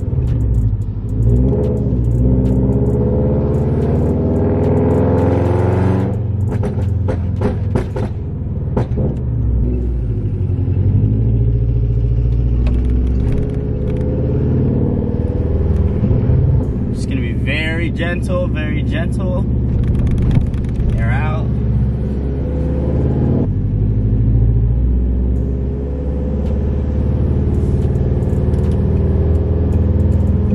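Scion FR-S's 2.0-litre flat-four boxer engine through a Tomei full titanium exhaust, headers and joint pipe, heard from inside the cabin, revving up and down through gear changes. A run of sharp pops and crackles comes about six to nine seconds in, from the pops-and-bangs tune.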